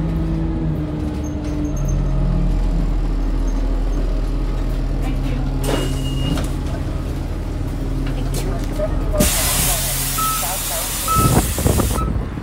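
City transit bus running and slowing to a stop, its engine humming steadily. About nine seconds in, a loud hiss of compressed air from the bus's pneumatics lasts about three seconds, with two short beeps during it and a few knocks at the end.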